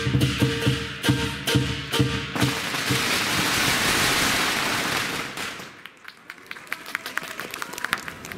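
Chinese lion dance percussion: the big drum with gong and cymbals beating a fast, even rhythm that stops about two and a half seconds in. A crowd then applauds, and the clapping thins to scattered claps near the end.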